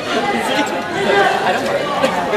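Indistinct chatter of many voices talking at once in a large hall, steady throughout, with no single clear speaker.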